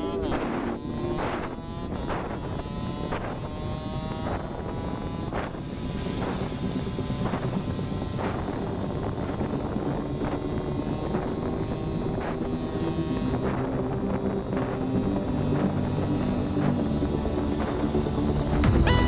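KTM Duke motorcycle engine running while riding, with wind noise on the microphone.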